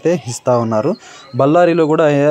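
A man's voice speaking in Telugu, narration with a short pause about halfway through.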